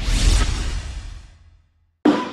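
Swoosh sound effect with a deep rumble under it, from an animated logo reveal. It swells in the first half-second and fades away by about a second and a half in.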